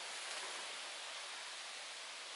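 Steady, faint hiss of outdoor background noise, with no distinct events.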